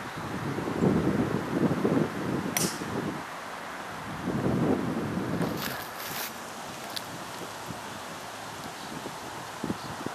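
A golf club strikes the ball off the tee with a single sharp crack about two and a half seconds in. Gusts of wind buffet the microphone before and after it.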